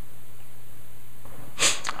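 A steady low hum through a pause in a man's speech, then a short, sharp breath from the man near the end, just before he speaks again.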